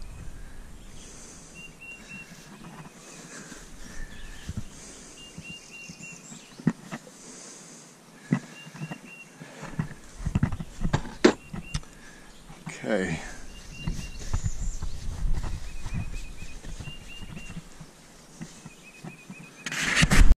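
Scattered clicks and knocks from tools and a grease tube being handled during outboard work, with faint bird chirps in the background.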